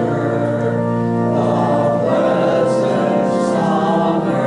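A small congregation singing a hymn together in unison, holding long notes over a keyboard accompaniment.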